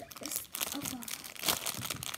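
Thin plastic packaging crinkling and crackling as fingers pull and pinch at it, in irregular crackles with a louder one about a second and a half in.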